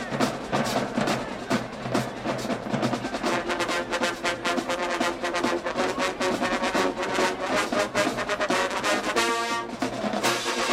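Marching band playing: drumline strokes throughout, with the brass section coming in about three seconds in and holding a loud chord near the end.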